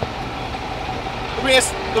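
Steady city street traffic noise with the low hum of idling vehicle engines close by.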